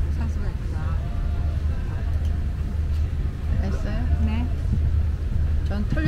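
Steady low hum of an airliner cabin, with a voice speaking softly about three and a half seconds in.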